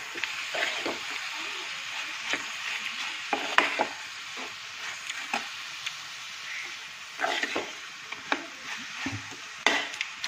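Pork, onion and tomato sizzling as they fry in an aluminium pan, stirred with a metal spoon that scrapes and knocks against the pan again and again. The loudest knocks come about a third of the way in and just before the end.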